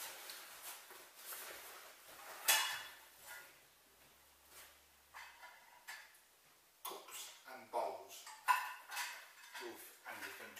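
Camping and survival gear being handled at a rucksack: fabric rustling and hard items knocking together, with one sharp clack about two and a half seconds in.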